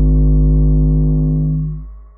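Closing synthesizer chord of an electronic track over a deep bass note, held steady and then fading out near the end.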